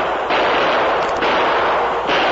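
A series of gunshot sound effects, one roughly every second, each starting sharply and followed by a long ringing tail, on an old radio broadcast recording.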